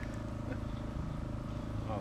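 Electric RC model aeroplane flying, its motor and propeller giving a steady, even drone.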